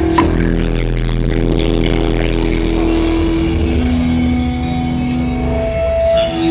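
Psychobilly band playing loud live music without vocals: long held notes that step down to a lower note about four seconds in, over upright double bass.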